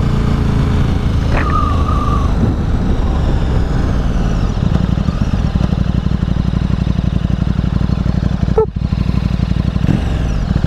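Sport motorcycle engine running with road and wind noise at the on-bike microphone, the engine note easing as the bike slows for a stop. A brief high tone sounds about a second and a half in.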